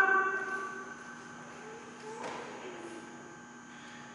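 The tail of a long, held voice call fading away in the first second, then quiet room tone with a faint knock about two seconds in.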